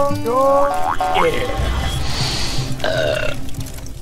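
Cartoon sound effects and character vocalisations over music: a quick run of rising, swooping pitched sounds, a hiss about two seconds in, and a short pitched call near three seconds.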